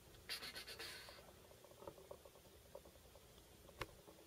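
Faint clicking and scratching from a computer mouse and keyboard being worked while a preset is chosen: a quick run of clicks about a third of a second in, scattered soft ticks after, and one sharp click just before the end.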